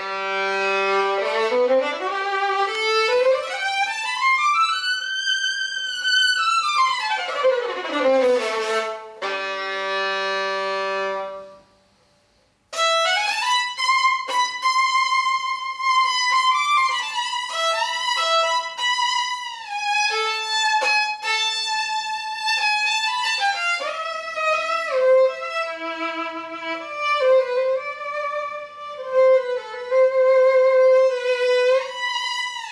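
Old 4/4 violin, presumably German-made in the 1930s–40s, bowed: a held low note, then a scale climbing about three octaves and back down, another held low note, and after a short pause about twelve seconds in, a slow melody.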